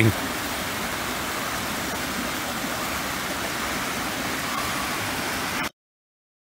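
Small creek cascading down a stepped waterfall over rocks: a steady rush of water that cuts off suddenly near the end.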